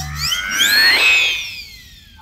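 Synthesized sweep sound effect: several tones glide upward together for about a second, then a single high tone slides down and fades out.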